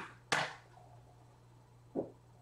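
Sharp knocks of a stylus or pen against a tablet or desk while writing: two close together at the start, the second the loudest, and another near the end.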